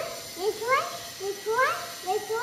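An animal giving a quick series of short, high-pitched rising calls, about two or three a second.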